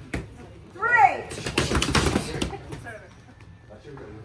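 Several pairs of boxing gloves striking focus mitts at once, a quick burst of overlapping smacks about a second in that dies away after a second or so, as the class throws jab-cross-hook combinations.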